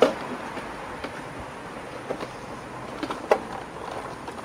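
Full glass beer steins knocking against each other and the tray as they are loaded onto a stacked tray: a few sharp knocks, the loudest right at the start and others about two and three seconds in, over steady street background noise.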